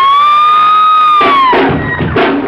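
A single high electric guitar note slides up, is held steady for over a second and then falls away, while the crowd begins cheering about a second in; drum hits come back at the very end.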